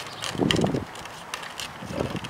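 Hard plastic wheels of a child's tricycle rolling over a concrete sidewalk: a low rumble with scattered light clicks, louder for a moment about half a second in.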